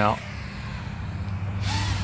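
FPV quadcopter flying past: a brief whoosh with a falling pitch near the end, over a steady low hum.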